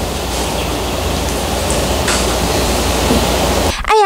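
Room noise: a steady hiss over a low rumble, cutting off abruptly near the end.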